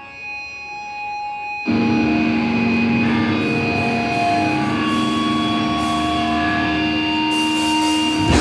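Amplified electric guitar ringing on a few steady feedback-like tones, then about two seconds in distorted electric guitars and bass come in together on long held, ringing chords, with no drumming.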